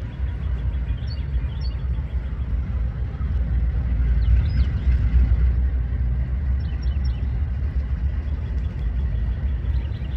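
Steady low rumble of a Norfolk Southern diesel locomotive's engine as it pulls its train slowly out of the yard. A few short high chirps come through over it.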